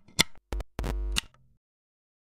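Quarter-inch instrument cable plugs clicking into the output jacks of an Electro-Harmonix Stereo Electric Mistress pedal, with two short bursts of mains hum buzz as the live connections are made, about half a second and one second in, and a sharp click as the buzz cuts off.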